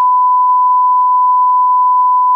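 Electronic bleep tone: a single pure beep held loud and unwavering.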